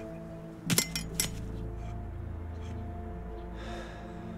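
Dramatic background score of sustained tones, with a low drone swelling in under a second in. Sharp clinks cut through twice, under a second in and again just after a second in, the loudest sounds here.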